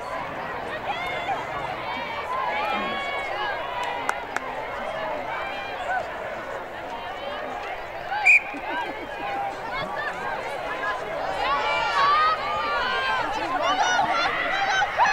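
Many voices of players and sideline spectators calling and shouting over one another during a girls' lacrosse game. About eight seconds in comes a short, loud high-pitched sound, the loudest moment.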